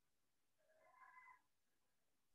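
Near silence, with one very faint, short pitched sound about a second in.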